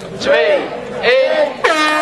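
Air horn blown as the race start signal, a loud steady blast that begins about one and a half seconds in and holds on, right after the last words of a countdown.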